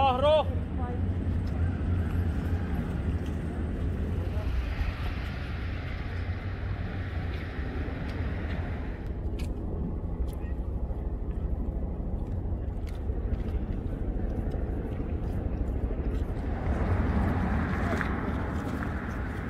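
Outdoor street ambience at a gathering: a steady low rumble with indistinct voices and a brief wavering pitched sound in the first half-second.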